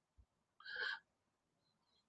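Near silence in a pause in speech, broken about a second in by one short, soft intake of breath.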